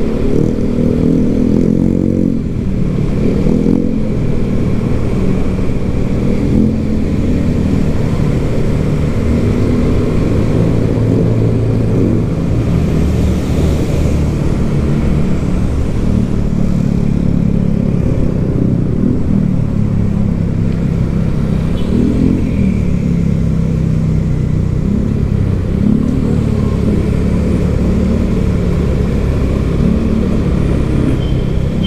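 Motorcycle engine running while riding in traffic, its pitch rising and falling with the throttle several times.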